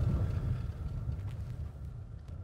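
Low rumble of a vehicle driving on a dirt road, heard from inside the cab, fading out gradually, with a few faint ticks and rattles.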